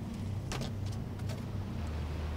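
Fingers handling a small card, making a few short rustles about half a second, one second and one and a half seconds in, over a steady low hum.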